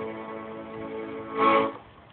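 Piano accordion holding a steady chord, then a short, louder closing chord about one and a half seconds in, after which the playing stops.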